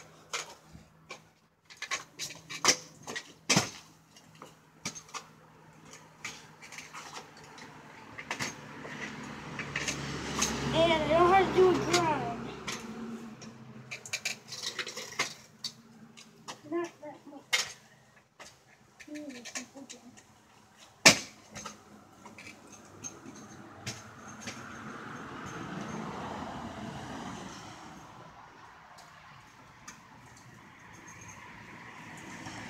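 Kick scooter clattering through tricks: a scattered series of sharp knocks and clicks as the deck and wheels hit the ground, with one loud bang about two-thirds of the way through.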